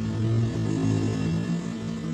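Steady low electrical hum from an arc welding machine idling between welds, over a faint even hiss.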